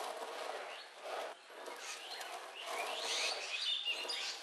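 Outdoor ambience: a steady background hiss with small birds chirping, short high chirps coming more often in the second half.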